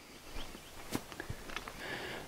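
Quiet outdoor background with a few faint, short ticks and scuffs.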